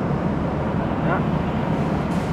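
Busy city street ambience: steady traffic rumble on wet roads mixed with the voices of passing pedestrians, with a short rising pitched sound, like a distant voice, about a second in.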